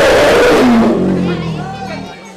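Asian elephant calling loudly: a harsh trumpeting blast that drops about a second in into a lower, falling roar, fading near the end.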